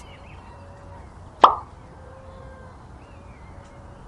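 A plastic toy hippopotamus set down in a metal toy trailer's tray: a single sharp tap with a short ring, about one and a half seconds in.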